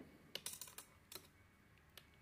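A few faint, light clicks of metal knitting needles tapping together as a stitch is worked, bunched in the first second or so.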